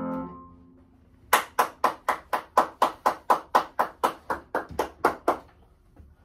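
The final piano chord dies away, then hand clapping follows: about seventeen sharp, even claps at roughly four a second for about four seconds.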